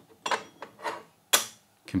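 Porcelain gaiwan cups and lids being handled: three short, light clinks and rubs, the last one the sharpest.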